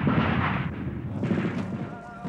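Battle gunfire and explosions: a dense crackling rumble that fades toward the end.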